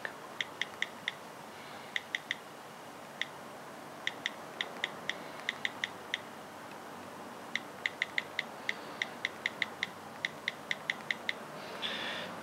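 iPhone's iOS 7 stock keyboard clicking with each key press during one-handed typing: quick runs of short, crisp ticks, with a pause of about a second and a half just past halfway.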